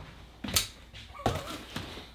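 Cardboard parcels being handled on a wooden kitchen island: one sharp knock about half a second in, with a brief voice sound a little later.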